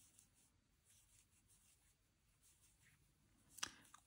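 Near silence, with faint soft rubbing of a crochet hook working cotton yarn.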